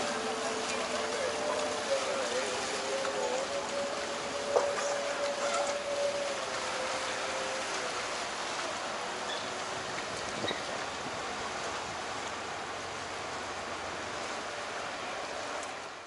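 Steady wash of water and motorboat engine noise on a busy canal, with a faint wavering tone through the first half and a single sharp knock about four and a half seconds in.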